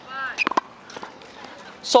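A brief voiced sound, then two sharp knocks close together about half a second in and a fainter knock about a second in, over quiet outdoor background. A man starts speaking near the end.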